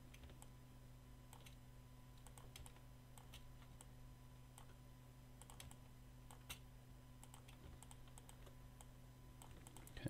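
Near silence with faint, scattered clicks of computer keyboard keys, among them the space bar used for Photoshop's pan and zoom shortcuts, one click a little louder than the rest past the middle. A low steady electrical hum runs underneath.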